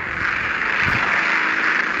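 Steady, even drone of racing-car engines with no single car standing out.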